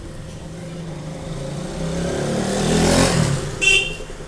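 A motor vehicle passing by, its engine hum and road noise swelling to a peak about three seconds in and then fading. A short, high-pitched beep sounds near the end.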